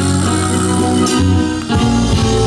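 Live rock band playing a passage without vocals: electric guitars and drum kit with held chords, and a sharp hit a little past halfway.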